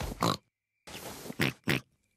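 Cartoon piglets snorting: a few short nasal pig snorts voiced by the characters, the last two sharp and close together.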